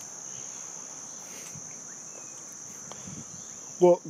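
A steady high-pitched whine held on one pitch over a faint background hiss, with no pulsing or change.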